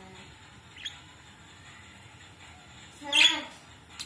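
Pet budgerigars calling in their cage: a short high chirp about a second in, then a louder, harsh squawk about three seconds in.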